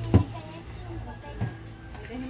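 Small cardboard medicine boxes set down on a plastic table: a sharp knock just after the start and a softer one about a second and a half in.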